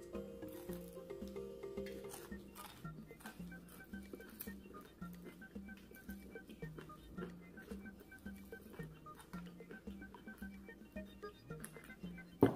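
Quiet background music with a steady, repeating bass pattern, with faint crunching and chewing of crispy fried catfish over it as small scattered clicks.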